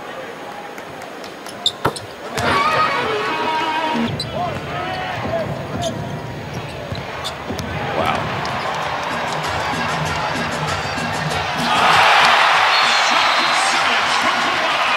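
A basketball bounces sharply a couple of times on the hardwood court at the free-throw line. Then the arena crowd and music come in, and the crowd gets loudly noisier, cheering, about twelve seconds in.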